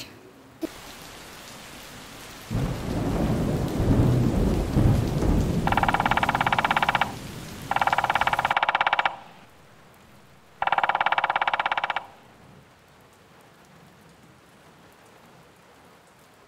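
Rain falling with a low rumble of thunder a few seconds in, followed by three bursts of rapid woodpecker drumming, each about a second and a half long, while the rain fades to a faint hiss.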